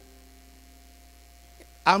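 Soft background music: a faint sustained chord of several held notes over a low steady hum. A man's voice comes in near the end.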